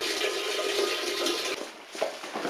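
Toilet flushing: a sudden rush of water that runs about a second and a half and then dies away.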